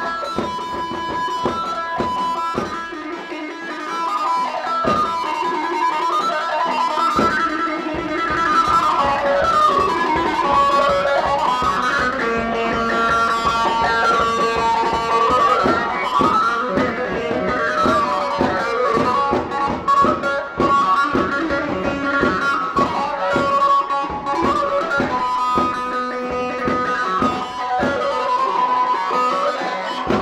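Fast live dance music: an amplified plucked-string lead plays a busy melody full of bends and slides over a driving, even beat. The deep part of the beat drops out for a few seconds early on and comes back in full about eight seconds in.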